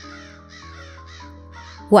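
Crows cawing, a rapid run of harsh calls of about four a second, over steady background music with held notes.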